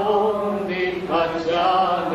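A slow Punjabi devotional hymn (bhajan) being sung, the voice holding long, drawn-out notes between lines of the verse.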